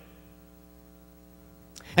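Faint, steady electrical hum made of several even tones, with a short intake of breath near the end.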